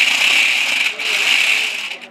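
Electric drive motors and gearboxes of a toy RC stunt car with mecanum wheels whirring as it drives under remote control. Two long runs, with a short drop about a second in.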